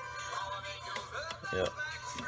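Small handheld Dremel rotary tool with a diamond cutter bit, running with a steady high whine. It is set to grind a corner off a shotgun trigger that catches on the safety. A man says "yep" near the end.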